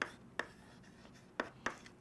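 Chalk writing on a chalkboard: about five short, sharp taps and scrapes as the strokes are made.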